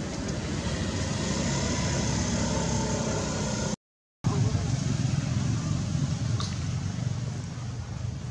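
Steady low rumbling outdoor background noise. It drops out completely for about half a second around the middle, then resumes.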